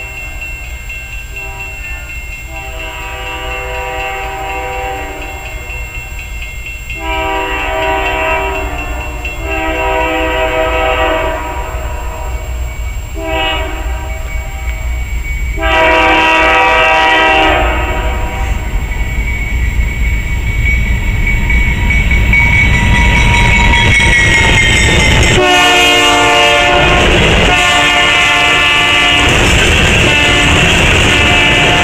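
A freight locomotive's three-chime air horn sounds long blasts, then a short one, then another long one: the grade-crossing signal. Beneath it, the diesel locomotives and the loaded coal train's wheels rumble, growing steadily louder. Near the end the horn sounds again as the locomotives pass close by.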